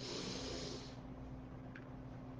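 A person taking one deep breath, about a second long, as she begins a calming breathing exercise, over a faint steady hum.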